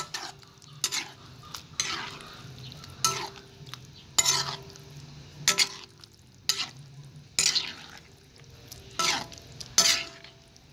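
Wooden spoon stirring a thick soya bean and tomato stew in a large aluminium pot, scraping and squelching through the beans in strokes about once a second.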